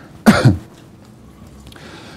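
A man coughs once, a single short burst about a quarter of a second in.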